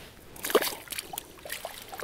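A small walleye dropped back into a water-filled ice-fishing hole: a splash about half a second in, then water sloshing and dribbling with a few light knocks.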